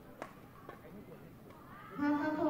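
Faint indoor sports-hall background of distant voices, with two short sharp clicks, about a quarter of a second and three quarters of a second in.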